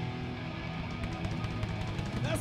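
Live rock band playing electric guitar, bass guitar and drum kit, the guitar and bass holding low sustained notes under the drums.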